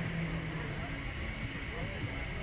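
Steady low rumble of wind on the microphone of the swaying slingshot ride capsule, with a brief hum from one of the riders fading out early and a faint steady whine.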